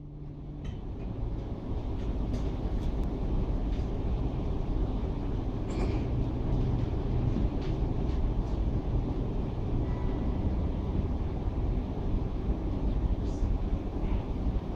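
A steady low rumbling noise that fades in at the start and then holds, with a few faint clicks.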